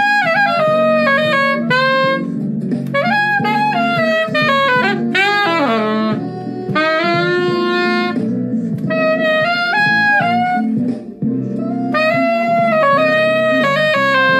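Glory JSS-84 soprano saxophone with a metal Borg mouthpiece playing a smooth jazz melody in phrases, sliding between notes, over an accompanying backing track. There is a short break in the line about eleven seconds in.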